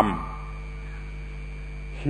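A man's word trails off at the very start, then a pause holding only the recording's steady background: a low mains-like hum with faint hiss and a few thin steady tones.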